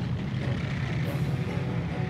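A moving tank: a steady low engine rumble.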